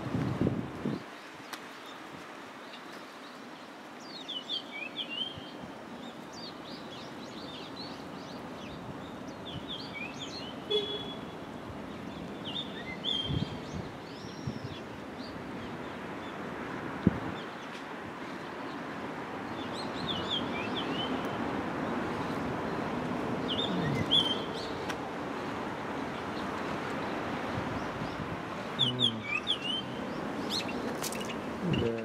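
Small birds giving short, high chirping calls in scattered bursts, several times, over a steady outdoor background hum. A single sharp click about halfway through.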